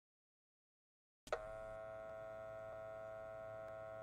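Silence for about a second, then a sharp click and a steady electronic hum of several held tones lasting about three seconds, cut off by a second click. It is an old television set being switched on.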